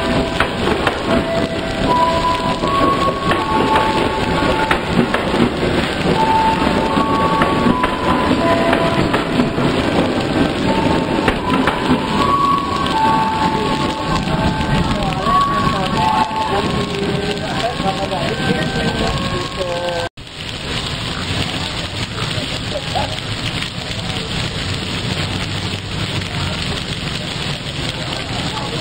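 Heavy rain pouring steadily on a station platform while trains pass. Over the rain, short high tones come and go at changing pitches until an abrupt break about twenty seconds in; after it the rain goes on under a steadier train rumble.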